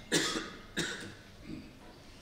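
A woman coughing three times: a hard first cough, a second about half a second later, and a softer third near the end.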